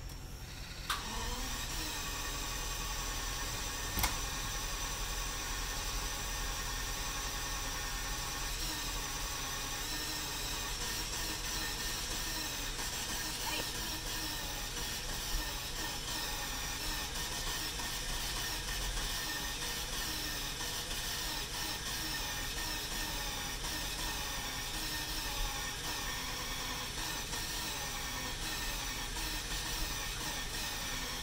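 1990 Jaguar XJS's 5.3-litre V12 catching about a second in, then idling steadily, with one sharp click a few seconds after it starts. Half the engine has no compression.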